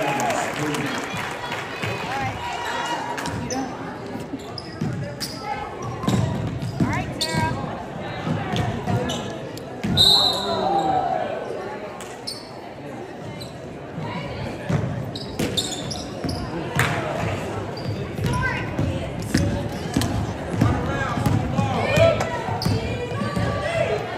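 Basketball dribbling on a hardwood gym floor, with repeated sharp bounces, among players' and spectators' voices in a large echoing gym. A short referee's whistle sounds about ten seconds in.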